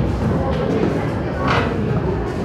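Background music with a busy room noise underneath, and a short click about one and a half seconds in.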